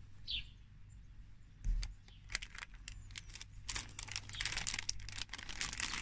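Hands rummaging in a plastic bag of Lego bricks: crinkling plastic and small bricks clicking against each other, starting with a thump about two seconds in and running densely to the end. A single short high chirp sounds near the start.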